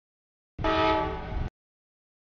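Freight locomotive air horn sounding one chord for just under a second, loud against the background. The audio drops out to dead silence before and after it.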